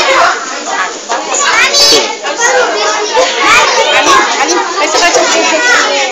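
Many young children's voices talking and calling out over one another, a loud, unbroken hubbub.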